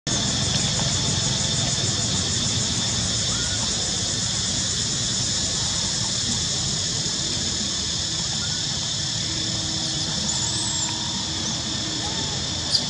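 A steady high-pitched chorus of insects droning without a break, with a few faint short bird chirps late on.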